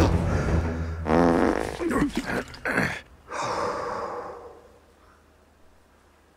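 A man straining on the toilet: short pitched groans and fart noises, then a long breathy sound that fades away about five seconds in.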